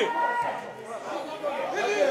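Several men's voices shouting and calling at once across a football pitch, players and bench urging each other on, carrying clearly with no crowd noise over them.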